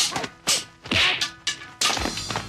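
Martial-arts fight sound effects for a staff and hand-to-hand brawl: a quick run of sharp whacks, about five in two seconds, with a whooshing swish near the middle.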